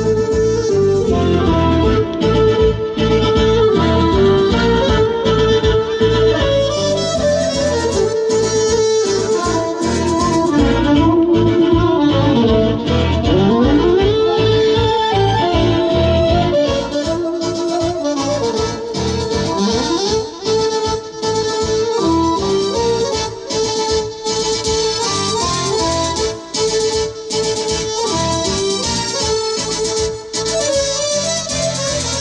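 Live band playing an instrumental Romanian folk tune with a melody line and a steady beat.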